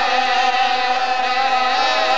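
A man's voice chanting a masaib mourning recitation in a sung style. He holds long, slightly wavering notes, unaccompanied.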